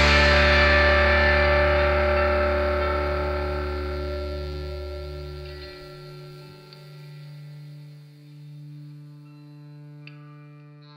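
Final chord of a rock song, on distorted electric guitar with effects, ringing out and slowly fading. A low bass note stops about six seconds in, leaving fainter held guitar notes that swell gently before dying away.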